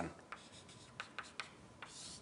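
Chalk drawing on a blackboard: a string of faint, short scratching strokes and taps.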